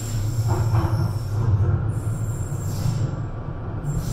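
Cabin sound of a London Underground Northern Line train (1995 Stock) running at speed without stopping: a steady low rumble from wheels and running gear, with a thin high squeal of the wheels on the rails.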